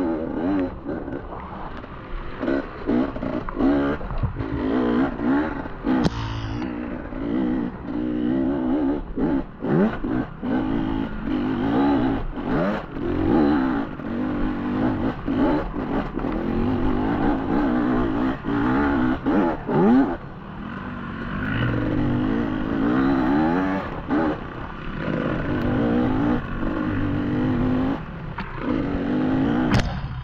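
Beta enduro motorcycle engine heard from on board the bike, revving up and down constantly with the throttle over rough trail. Frequent short knocks and clatter from the bike hitting the uneven ground run through it.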